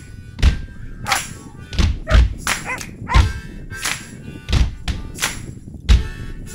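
Background music with a strong percussive beat, sharp hits coming roughly every half second to second.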